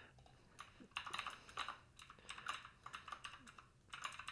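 Typing on a computer keyboard, fairly faint: short irregular runs of keystrokes with small pauses between them.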